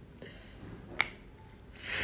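A single sharp click about halfway through, then a short breathy exhale near the end.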